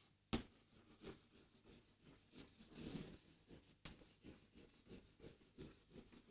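Chalk writing on a blackboard: faint scratching strokes of cursive handwriting, with a sharp tap near the start and another just before four seconds in.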